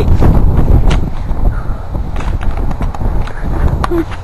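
Handling noise from a handheld camera being swung about: a loud low rumble with scattered knocks and clicks.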